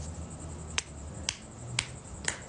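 Smartphone on-screen keyboard click sounds as letters are typed: three sharp, short taps about half a second apart over a faint low hum.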